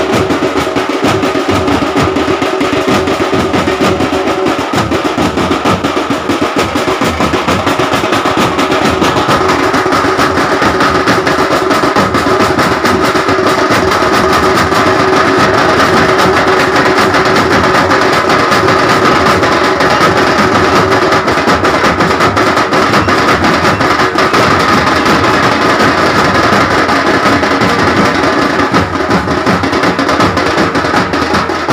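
Loud, fast drumming with dense, continuous strokes, and a steady held note sounding over the drums.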